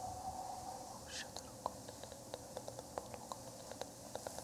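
Quiet whispering close to a microphone. From about a second in comes a run of small, sharp clicks, several a second.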